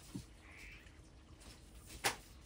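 A domestic cat making one faint, brief call about half a second in, after a soft low thump at the start.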